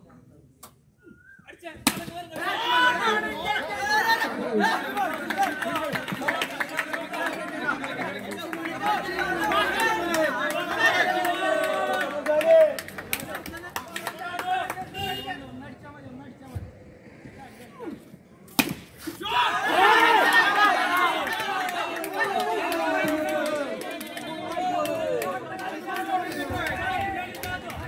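Several voices talking and calling out over one another on a turf cricket ground. There is a lull around the middle. A sharp knock comes just before the voices start and another about two-thirds of the way through.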